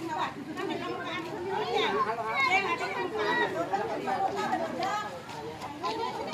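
A group of people chattering, many voices talking over one another at once.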